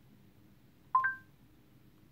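Google Assistant chime through the car's speakers: two short electronic tones, the higher one a moment after the lower, about a second in, signalling that the spoken question has been taken. Otherwise quiet cabin tone.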